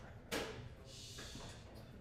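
A tambourine hit once about a third of a second in, its metal jingles ringing briefly and fading.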